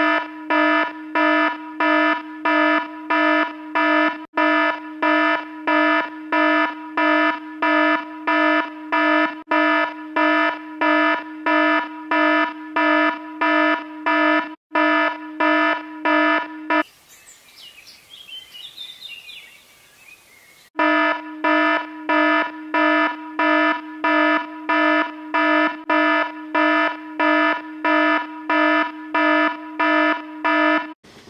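Phone alarm going off: a buzzy beep repeating about twice a second. The beeping breaks off for about four seconds past the middle, then starts again.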